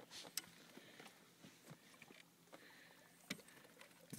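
Near silence: a few faint knocks and clicks over a quiet hiss, the clearest about half a second in and again near the end.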